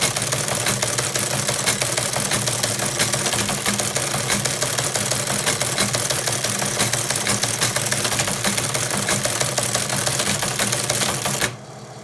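Teletype Model 15 printing a BASIC program listing: continuous rapid clatter of its typebars and printing mechanism over the steady hum of its motor, stopping suddenly near the end.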